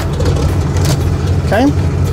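A steady low engine rumble at idle, with one short spoken word near the end.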